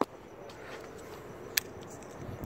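A single sharp plastic click about one and a half seconds in, with a couple of fainter ticks, as the white plastic twist-lock adapter is worked off the base of an H13 LED headlight bulb, over faint steady background noise.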